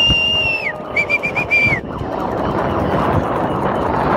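A whistle blown in a long, steady high blast that drops away in pitch at its end, then five quick short toots. From about halfway on, a steady rushing noise of the mass of runners' footfalls on the road fills the sound.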